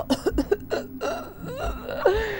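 A woman's voice making short non-speech sounds, then a longer hiss, acting out someone spritzing body spray and gagging on it.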